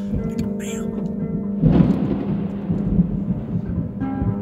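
A peal of thunder breaking suddenly about one and a half seconds in and rumbling on, fading slowly, under steady background music.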